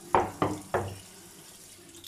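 Kitchen tap water running over black olives in a glass baking dish as a hand stirs them to wash them, with three short sharp sounds in the first second.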